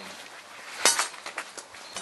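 Fire burning in an iron fire basket, crackling: one sharp crack just under a second in, followed by a few smaller ticks.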